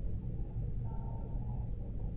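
Steady low background hum of the recording, with no other distinct sound.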